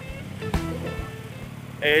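Harley-Davidson motorcycle's V-twin engine running at a steady cruise, a low even drone, with background music over it.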